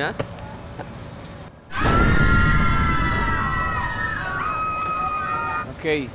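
A loud held chord of several tones comes in suddenly about two seconds in over a low rumble, drifting slightly down in pitch, with a higher note joining near the end before it stops: an edited-in musical sound-effect sting.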